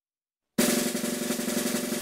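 Half a second of silence between songs, then a snare drum roll in the soundtrack music, dense and even, running on to a crash at the end.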